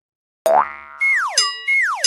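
Cartoon sound effects. After about half a second of silence comes a sudden twangy boing with rising pitch, then two falling whistle slides, one about a second in and one near the end.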